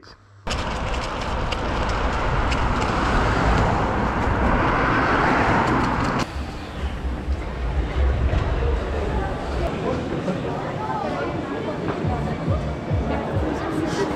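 Rushing noise of a BMX bike being ridden past a helmet camera: wind on the microphone and tyres rolling. It is louder for the first six seconds, then quieter, with voices in the background.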